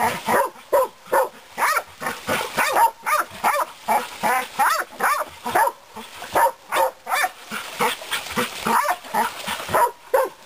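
Pig dogs barking nonstop at a bayed black boar, about two to three barks a second.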